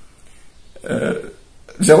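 A man's voice: one short throaty vocal sound about a second in, then his speech starting again near the end.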